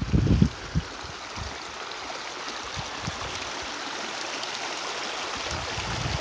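Small mountain creek running steadily, water rushing over a low riffle, growing slightly louder toward the end. A few low thumps come in the first half-second.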